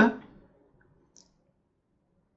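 Near silence with one faint, short click about a second in, typical of a computer mouse button.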